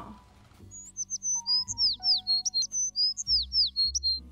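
Background music: low held chords with a bright, high chirping figure like birdsong laid over them, the chirp phrase repeating about twice.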